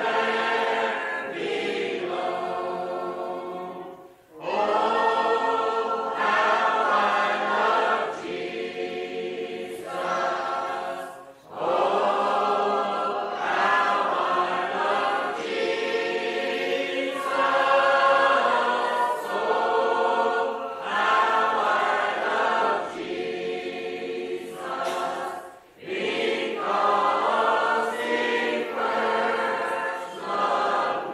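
A congregation singing a hymn a cappella, many voices on sustained notes with no instruments, from an old cassette-tape recording. The singing breaks off briefly three times between lines, about 4, 11 and 26 seconds in.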